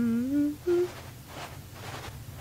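A voice humming a short 'mm-hmm' phrase that rises in pitch, then one brief hum, followed by two soft hissy sounds.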